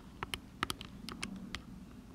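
Faint, irregular clicks of calculator buttons being pressed, about a dozen light taps in two seconds, as an equation is keyed in.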